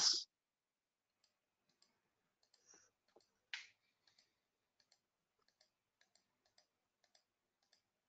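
Faint computer mouse clicks over near silence, with one louder short click about three and a half seconds in.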